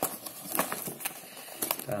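Cardboard box flaps being opened and handled, with a few light clicks and rustles from the box and the plastic bags of LEGO bricks inside.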